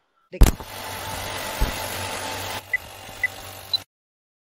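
Edited transition sound effect under a title card: a sharp hit about half a second in, then a steady noisy rush with a single low thump. About two and a half seconds in it drops quieter, two short high beeps sound, and it cuts off just before the end.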